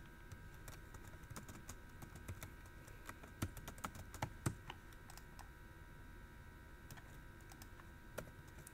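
Faint computer keyboard typing: scattered keystrokes, coming thickest about three to four and a half seconds in, over a faint steady hum.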